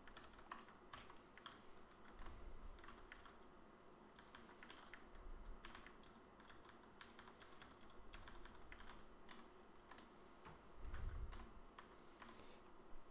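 Faint typing on a computer keyboard, irregular keystrokes coming in short runs, with a brief low rumble near the end.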